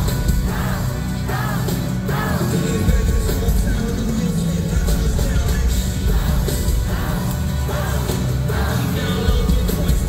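Loud live hip-hop music from a band with heavy bass and drums, heard through the venue's sound system from within the crowd, with a voice over it.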